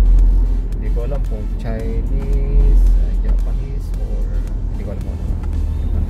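Steady low road and engine rumble inside a moving car's cabin, with background music and a singing voice over it.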